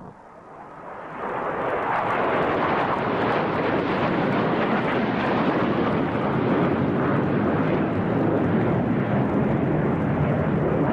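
Jet aircraft in flight: a steady, loud rushing roar of engine and air noise that swells in over the first second or so and then holds even.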